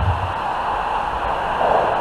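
Steady outdoor background noise, a low rumble with hiss and no clear events, in a pause between spoken phrases.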